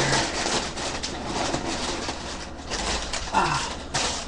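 Rustling and crinkling of packaging being handled while a part is unwrapped: a continuous scratchy rustle with many small clicks.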